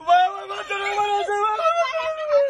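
A high-pitched voice in long, drawn-out wailing cries, starting suddenly and held on fairly steady notes that step up and down.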